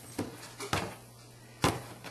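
Three sharp knocks on a wooden table top, the last one the loudest, as a bundle of cut T-shirt strips is shaken out straight and knocked against it.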